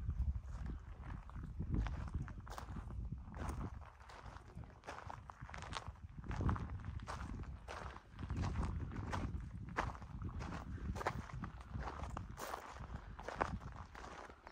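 Footsteps crunching on a gravel road shoulder: a run of irregular steps over a low rumble.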